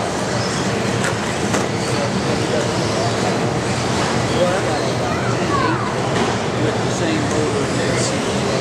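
Small nitro-engine RC race cars buzzing around the track, their engines revving up and down, over the steady din of a busy hall with voices.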